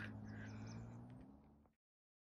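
Faint outdoor background noise with a low steady hum, fading out and dropping to dead silence about three-quarters of the way in.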